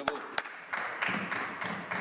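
Two sharp knocks, then a group of people clapping, the applause starting a little under a second in.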